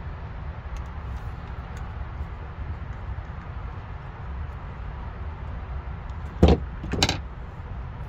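Screwdriver working the screw out of a Mercury two-stroke outboard's poppet valve assembly, with faint small metal clicks, then two loud metallic knocks about half a second apart near the end as the metal parts clink together. A low steady rumble runs underneath.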